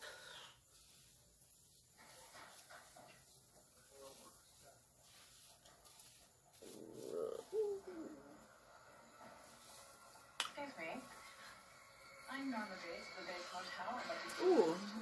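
Faint, indistinct voice sounds in the background, rising near the end, with one sharp click about ten seconds in.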